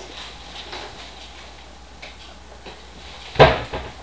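A single loud knock, like something hard struck or set down, about three and a half seconds in, over quiet room sound.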